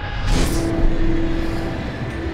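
A car driving past close by over the street noise, with a brief whooshing swell about a third of a second in.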